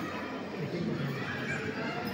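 Indistinct voices murmuring in a large, echoing hall, with no clear words.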